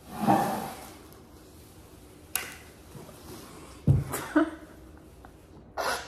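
A breathy vocal sound at the start, then a sharp click, a low knock and a couple of brief murmurs from people tasting jelly beans at a table.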